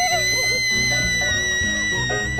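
A girl's long, high-pitched squeal of delight as she rides a zip wire: it glides up and is held on one note, sagging slightly, over background music.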